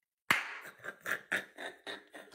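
A man's breathy laughter: a sudden burst about a third of a second in, then a run of short 'hah' pulses about four a second that fade away.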